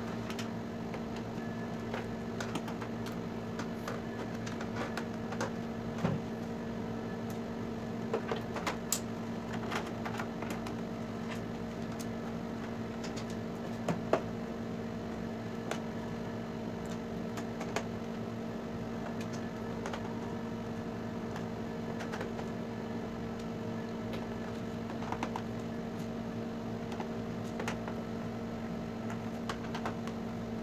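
A steady electrical hum in the room, with scattered light clicks and taps from a screwdriver and screws on a TV's plastic back cover as it is being unscrewed.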